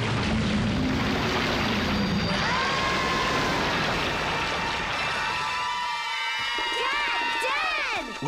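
Cartoon sound effect of lake water surging and splashing with a low rumble as something large rises out of the water. After about two and a half seconds, sustained dramatic music chords take over and build, with a few swooping glides near the end.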